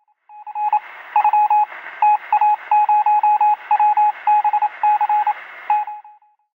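Morse-code beeping over radio static: a single tone keyed on and off in short and long beeps above a steady hiss, starting about half a second in and cutting off just before the end.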